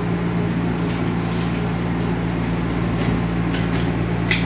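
Nippon Sharyo light rail car standing at an underground platform, its onboard equipment giving a steady low hum. A few faint light clicks come about a second in and near the end.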